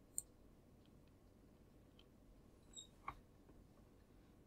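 Near silence with two short, sharp computer mouse clicks, one just after the start and one about three seconds in.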